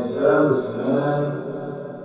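A man's voice speaking a short line, heavily echoed so that it smears into a chant-like tail and fades away near the end.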